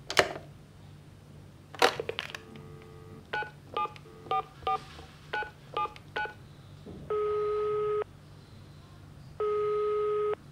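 A telephone call being placed: the receiver clicks, a dial tone sounds briefly, and about nine keypad tones are dialled. Then two one-second ringing tones sound in the earpiece while the other phone rings.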